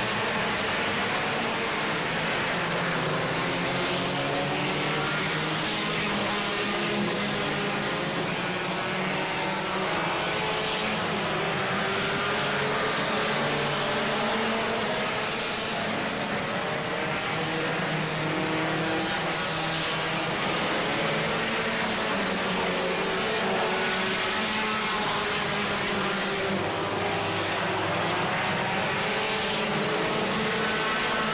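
A field of four-cylinder enduro race cars running together around the oval. Their many engines overlap into one steady, loud sound whose pitches keep rising and falling as cars pass and rev.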